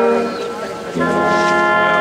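Brass band of tubas, horns, trumpets and trombones playing a slow processional march: a sustained chord ends shortly after the start, there is a brief softer gap, and a new full held chord comes in about a second in.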